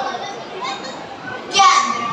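Children's voices and chatter from an audience, with a louder voice breaking in about one and a half seconds in.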